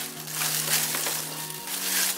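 Crumpled cellophane crinkling as hands spread and smooth it flat, over background music.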